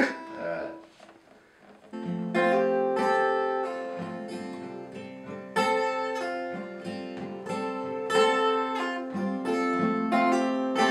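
Acoustic guitar strummed in chords, starting about two seconds in after a short laugh and a near-quiet moment, with a series of strummed strokes that ring on between them.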